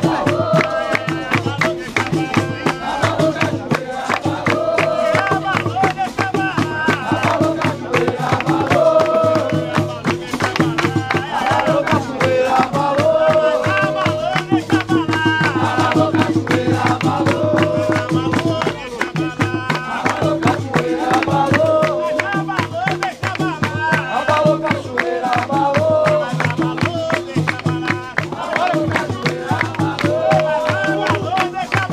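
Capoeira roda music: berimbaus and percussion with group singing, and hand clapping from the people in the circle.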